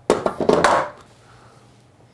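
A sharp click, then under a second of rustling handling noise as tools or parts are moved, then quiet room tone.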